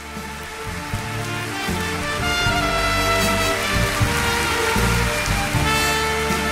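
Live orchestra playing the opening bars of an enka song, with sustained strings and brass, growing steadily louder. Audience applause runs underneath.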